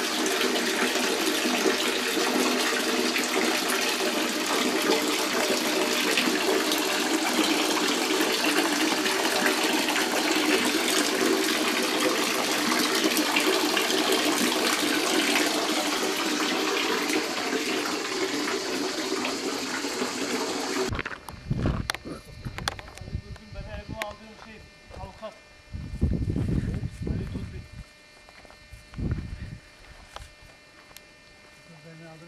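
Water from a spring fountain's two metal pipe spouts running in thin streams and splashing steadily into the basin. It cuts off suddenly about twenty seconds in, and is followed by a quieter stretch with a few low rumbles.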